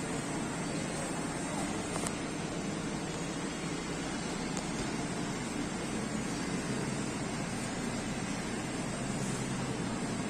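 Steady, even hiss of moving air from a supermarket's open refrigerated display cases and their fans.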